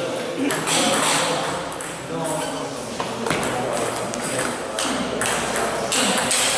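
Table tennis ball being served and rallied, a run of sharp clicks as it strikes the bats and the table, over background voices echoing in a sports hall.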